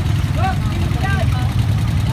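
Motorcycle engines idling in a stalled traffic jam, a steady low rumble, with brief bits of people's voices about half a second and a second in.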